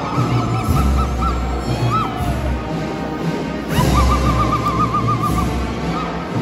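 Ululation: high, rapidly trilling cries from the congregation, short ones at the start and about two seconds in, then one long trill from about four seconds in, over music with a deep pulsing bass.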